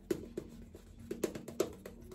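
Badger shaving brush working soap lather on a face: a run of quick, irregular clicks and crackles as the brush is stroked over the skin.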